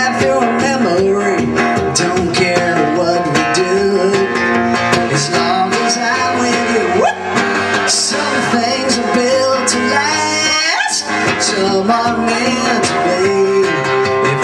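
Acoustic guitar strummed steadily in a solo live performance of a country-tinged pop song: an instrumental passage between sung lines.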